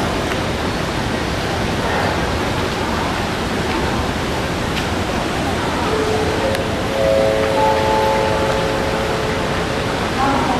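A loud, even rushing noise, like water or wind hiss, runs throughout. From about six seconds in, several steady held tones enter one after another, stacking into a chord.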